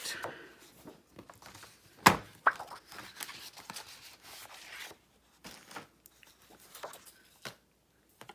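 A sheet of cardstock being handled, lifted off a magnetic stamping platform and laid down: a sharp knock about two seconds in, then paper rustling and sliding, with a few light taps near the end.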